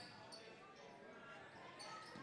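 Near silence: faint gymnasium background noise during a basketball game, with two brief faint high sounds.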